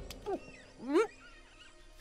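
Two short voice-like cries, the second about a second in, louder and rising sharply in pitch, over faint high chirping in the background.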